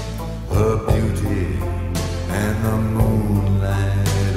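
Background music: slow, sustained chords over a steady low bass.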